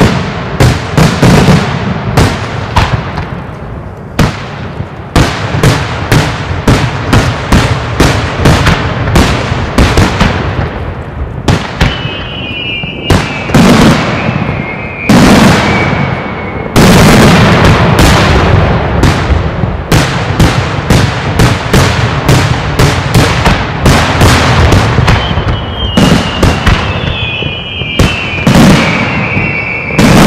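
Daytime fireworks display: a dense barrage of aerial shell bursts and firecracker bangs, several a second. Two long whistles slide slowly down in pitch, one about twelve seconds in and another near the end.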